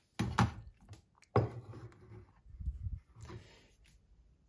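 Glass jars being handled on a stainless-steel kitchen scale under a honey tank's gate: a few knocks and scrapes of glass on metal as the filled jar of honey is moved off and an empty jar slid into place. The sharpest knocks come right at the start and about a second and a half in, with a duller rumble of sliding near the end.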